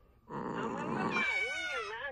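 A cartoon cat's wordless vocalization: a breathy start about a third of a second in, turning into a wavering voice that swoops up and down.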